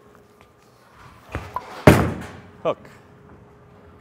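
A Black Hammer urethane bowling ball is released and lands on the wooden lane: a small knock, then a loud thud about two seconds in, followed by the ball rolling quietly down the lane. The pins start crashing right at the end.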